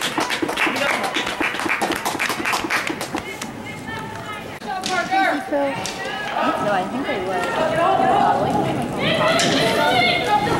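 Hoofbeats of horses galloping on a dirt arena floor, a quick run of thuds over the first few seconds, followed by spectators' voices calling out during play.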